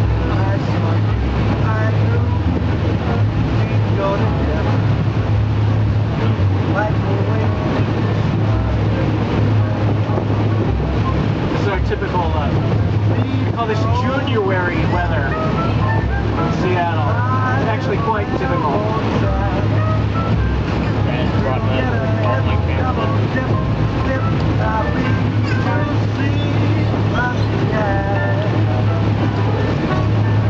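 Steady low drone of an amphibious duck tour vehicle's engine as it cruises on the water, with voices and some music over it, busiest in the middle.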